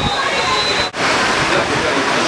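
Spectators' voices mixed with a steady rushing noise. The sound cuts out for an instant about a second in.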